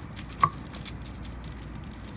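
Hands squaring up a glued-up stack of wood veneer on MDF on a workbench: one sharp tap about half a second in, then faint scattered handling sounds.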